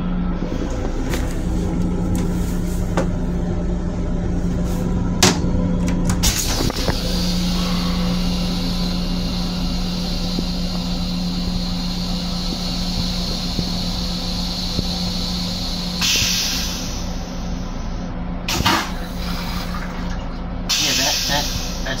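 LIRR M7 railcar toilet flushing. A long hiss of spray and air is followed by a louder rushing hiss about three-quarters of the way in and another near the end as the bowl empties, a sound like gasping. The car's steady low hum runs underneath.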